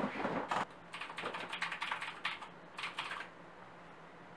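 Rustling shuffle of someone settling into a desk chair, then a quick burst of typing on a computer keyboard that stops a little after three seconds in.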